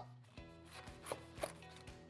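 Large chef's knife cutting through the top of a raw, hard artichoke on a cutting board: a series of short, crisp crunching cuts.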